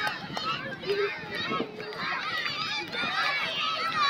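A crowd of children shouting and chattering all at once, many high voices overlapping without a break.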